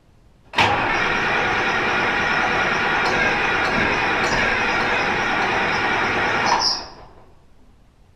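Starter cranking a Case 2090 tractor's six-cylinder diesel engine steadily for about six seconds, then stopping abruptly when released. The engine is hard to start because air is still trapped in the fuel system after a fuel filter change.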